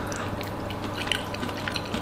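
A man chewing a mouthful of bobotie with chutney: soft wet mouth sounds with scattered small clicks.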